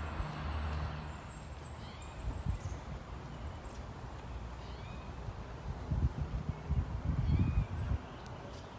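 Outdoor ambience of wind rumbling on the microphone, gusting louder near the end, with a few faint bird calls.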